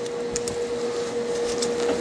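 A steady machine hum with a constant mid-pitched tone over a soft whir, like a small fan or motor running, with a few faint light clicks.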